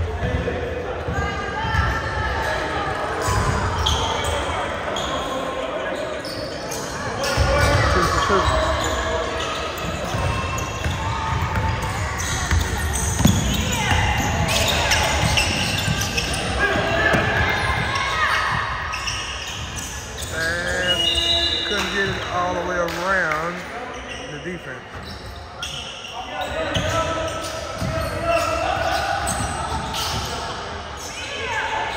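Live basketball game sounds in a gym: a basketball bouncing on the hardwood floor in repeated short knocks, with players' voices calling out on the court.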